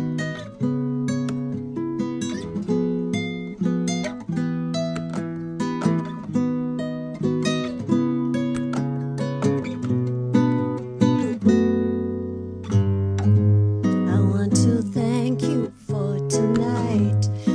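Classical (nylon-string style) acoustic guitar, fingerpicked, playing an instrumental passage of a song. Single notes and chords are plucked and left to ring, at about one or two strikes a second.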